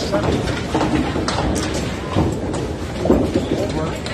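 Candlepin bowling alley ambience: a murmur of voices over the rumble of balls rolling on wooden lanes, broken by a few sharp clacks of balls and pins.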